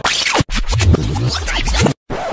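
Record-scratch rewind sound effect: fast scratchy sweeps over music that stop dead twice, about half a second in and near the end.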